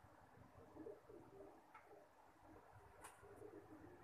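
Near silence: faint, low cooing of a bird in the background, with a couple of light clicks.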